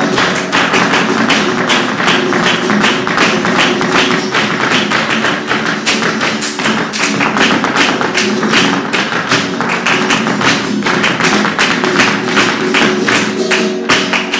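Live flamenco: rapid percussive strikes from the dancer's shoe footwork (zapateado) on the stage and palmas hand-clapping, over a nylon-string flamenco guitar.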